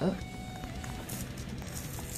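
Faint handling of a small cardboard toy box as its end flap is worked open, with a quiet run of music underneath.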